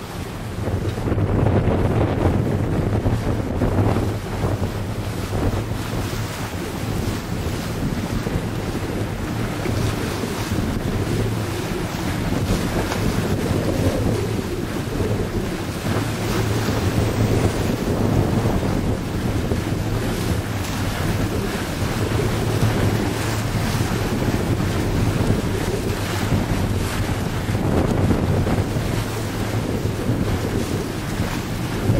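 Steady wind buffeting the microphone aboard a Catalina 320 sailboat under sail, with choppy water rushing and slapping along the hull.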